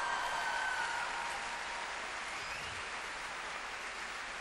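Large concert-hall audience applauding, with a few cheers near the start, the applause slowly easing off.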